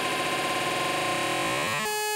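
Electronic music with the drum and bass beat dropped out: a steady, noisy synthesizer wash with sweeping tones. Near the end a steady pitched tone comes through.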